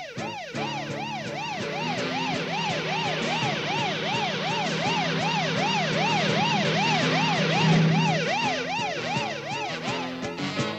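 Cartoon sound effect of a siren-like wail, rising and falling rapidly about three times a second, over a low steady hum that swells briefly near the end.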